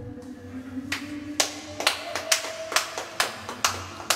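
Hand-clapping, sparse and unhurried at about two claps a second, beginning about a second in.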